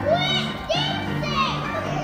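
Children shrieking and shouting excitedly, three loud high cries in quick succession, over steady background music.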